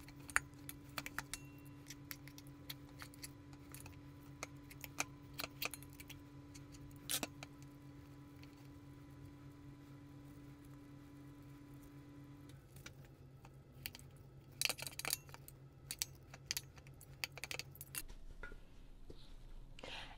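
Two metal forks shredding boiled chicken breast in a bowl: faint scattered clicks and scrapes of metal against the bowl, busier in the later part. A low steady hum runs underneath and drops away in two steps, about two-thirds of the way in and near the end.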